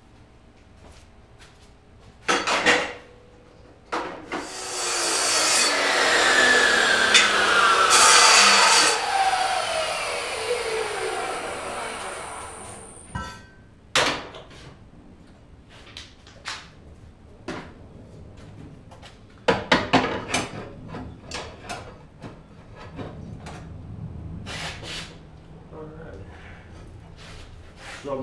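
A chop saw cutting through a steel chassis tube for about five seconds, its motor then winding down with a falling whine. After that come scattered clanks and knocks as the trimmed tube is handled and test-fitted against the car's sheet metal.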